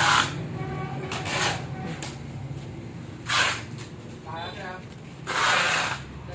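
Packing work: several short hissing bursts, the longest near the end, over a steady low hum.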